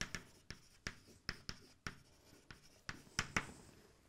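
Chalk writing on a blackboard: an irregular run of sharp taps and short scratches as letters are written, the loudest strokes a little after three seconds in.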